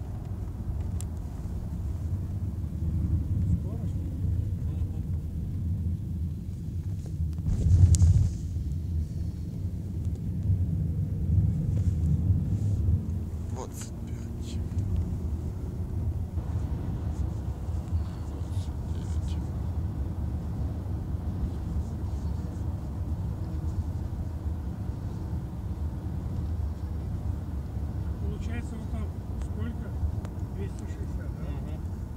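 Steady low road and engine rumble inside a moving car's cabin, with one loud knock about eight seconds in.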